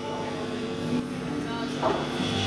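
Electric guitar and bass ringing out held notes through the amplifiers at the start of a live rock song, with voices in the room, before the full band comes in.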